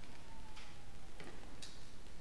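A few faint, irregular ticks and clicks over low room noise as small paper slips are handled, with a faint thin tone that falls slightly in pitch during the first second.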